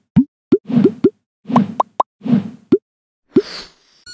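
Animated logo sting made of cartoon sound effects: about nine quick rising 'bloop' plops in an uneven run, a few with a soft thud under them, then a short airy shimmer near the end.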